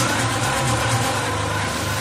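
Techno track in a breakdown with the kick drum out: a held synth bass tone under a steady wash of hiss, with no beat.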